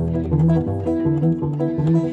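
Auden acoustic guitar played fingerstyle, picked notes over a repeating rhythmic bass line, with no singing.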